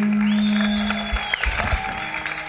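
The last held note of a live acoustic punk song, voice and acoustic guitar, ringing out loud, with crowd noise and a high, steady whistle over it. About a second and a half in it breaks off into a brief noisy clatter.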